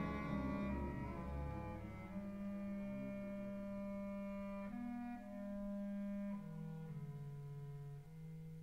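Opera orchestra playing softly: sustained chords in the low strings with woodwinds, the harmony changing about five seconds in and again after six.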